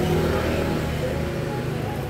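Street traffic: a motor vehicle's engine running on the road, a steady low hum.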